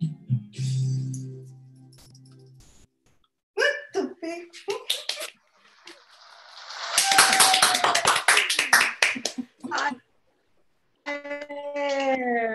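The song's last guitar chord rings on and cuts off sharply, then voices and a burst of clapping and cheering come through a video call, loudest in the second half.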